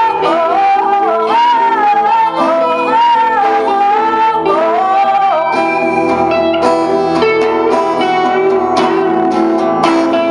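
Live blues arrangement: a woman singing over a strummed acoustic guitar with an electric guitar playing along. Her voice stops about halfway through and the two guitars carry on alone.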